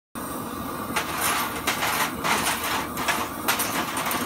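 Propane torch burning with a steady roaring hiss as it heats metal hardware to burn off the factory coating, with a few sharp clicks spaced through it.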